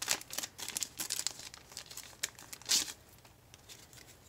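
Thin clear plastic bag crinkling and crackling as it is pulled open and handled, in quick crackles through the first couple of seconds and one louder rustle near three seconds, then quieter.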